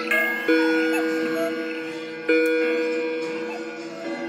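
Several clocks striking noon together: a deep bell-toned hour strike sounds twice, about two seconds apart, each ringing out slowly, over higher chimes and ticking from other clocks.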